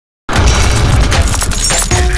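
A sudden loud shattering-crash sound effect over a deep rumble, starting about a quarter second in and crackling on to the end.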